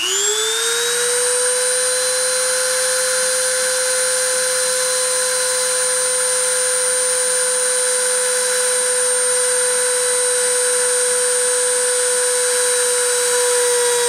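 Dremel rotary tool spindle spinning up to about 30,000 RPM: a quick rising whine in the first second or so, then a steady high whine. It is driving a copper wire against a ceramic substrate in friction surfacing.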